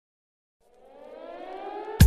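Siren sound effect opening a dance remix: after about half a second of silence, a single rising wail with overtones swells steadily louder as a build-up into the beat.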